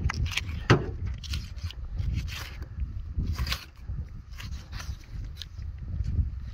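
Knife cutting through a deer's neck ligaments and spinal cord to free the head from the spine: irregular crackles, scrapes and sharp clicks over a low rumble.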